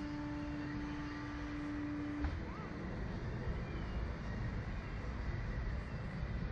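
Steady machine hum from the slingshot ride's equipment, which cuts off with a click a little over two seconds in, over a constant low outdoor rumble.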